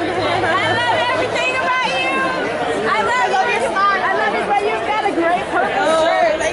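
A crowd chatting among themselves: many overlapping voices talking at once, with no single speaker standing out.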